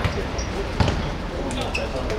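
A football being kicked: two sharp thuds, the louder one a little under a second in.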